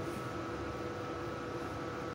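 A steady background hum holding a few constant tones, with no distinct strokes or knocks.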